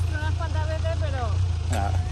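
A man's and a woman's voices talking and laughing over a steady low rumble.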